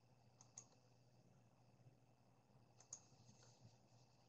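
Near silence with a few faint clicks, a pair about half a second in and another near the three-second mark.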